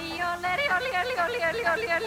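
A high, yodel-like voice in a commercial's music, warbling quickly up and down between notes.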